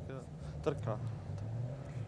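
A car engine idling nearby, a steady low hum, with a few words of a man's speech over it about half a second in.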